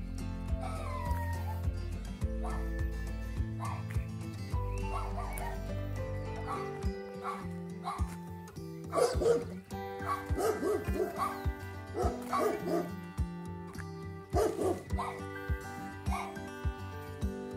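Background music with held notes and a steady beat. From about halfway through, a dog barks repeatedly in short bursts, loudest about nine seconds in.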